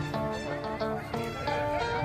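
Music with held notes that change pitch every half second or so.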